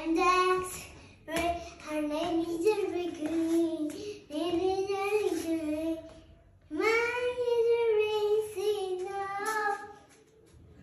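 A young boy singing unaccompanied in sustained phrases, with short breaths about a second in and again near the middle.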